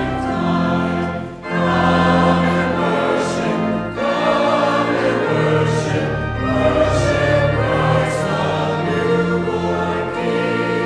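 Church choir singing in slow, sustained phrases, with short breaks between phrases about a second and a half in and again at four seconds.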